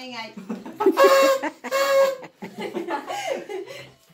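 Party horn blown twice in short steady blasts, about a second in and again about two seconds in, with laughter and voices around it.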